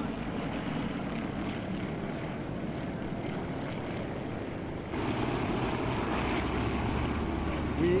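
Piston-engined, propeller-driven World War II warbirds flying by overhead: a steady engine drone that gets louder and heavier about five seconds in as the planes pass.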